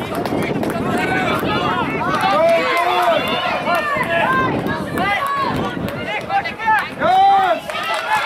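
Many voices of players and spectators shouting over one another during play in a soccer match, with one long, loud shout near the end.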